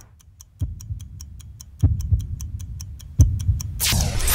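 Clock-like ticking sound effect, about five ticks a second, with deep bass hits about half a second, two seconds and three seconds in, each louder than the last, and a loud swell near the end: the sound design of a film's opening.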